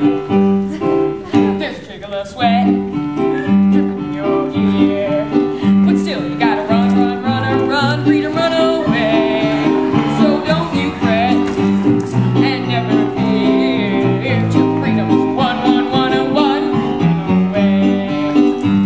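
Musical-theatre show tune: a boy's solo voice singing the lead over an instrumental backing with a steady, bouncing low beat, sung in a key lower than suits his voice.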